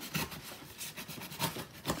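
Hands handling a package close to the microphone: irregular scratchy rubbing with small clicks, and a firmer knock near the end.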